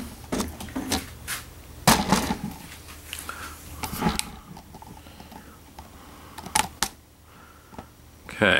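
Handling noise of a handheld camcorder being carried and repositioned: scattered clicks, knocks and rustles, a few seconds apart, over a low steady hum.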